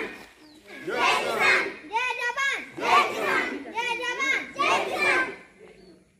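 A group of schoolchildren shouting slogans together in unison, in short loud rhythmic calls about one a second, fading out near the end.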